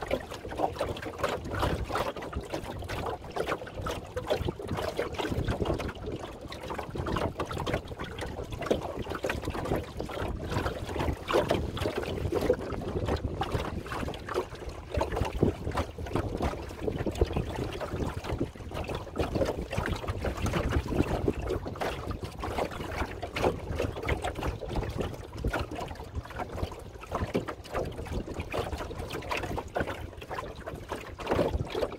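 Water lapping and gurgling along the hull of a small wooden Shellback sailing dinghy under way, an irregular run of small splashes, with wind rumble on the microphone.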